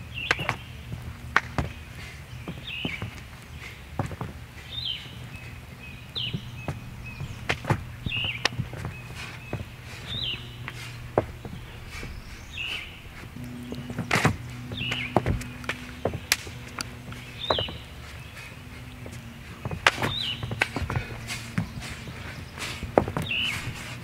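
Background music with a steady low drone and a short high chirping figure repeating about once a second, over irregular sharp clicks and thumps.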